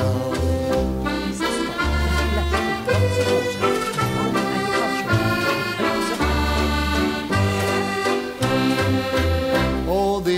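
Instrumental break in a Scottish bothy ballad: a melody played over a regular bass accompaniment between sung verses, with no singing.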